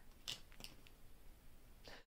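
Faint clicks of small plastic makeup tubes and cases being picked up and handled, three short ticks against near silence.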